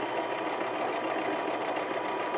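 Electric domestic sewing machine running steadily, stitching a seam through two layers of heavy canvas, with a fast, even stitch rhythm.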